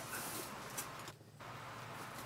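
Faint rustling and scraping of cardboard as a box's flaps and the white board inside are folded open by hand, with a brief lull just after a second in.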